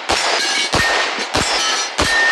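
Compensated 9mm Open-class race pistol firing three shots about two-thirds of a second apart, each followed by the ring of a hit steel target.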